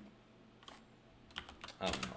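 Computer keyboard typing: a single keystroke, then a quick run of several more in the second half.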